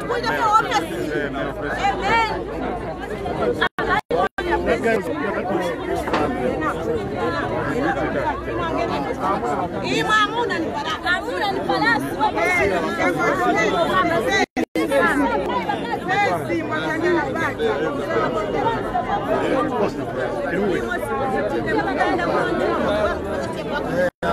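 Speech only: several people talking at once in a crowd, with animated, overlapping voices. The sound cuts out completely for a split second a few times, around the fourth second and again about halfway through.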